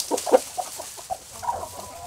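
Chickens clucking: a string of short clucks, the loudest about a third of a second in, with a brief drawn-out call a little after the middle.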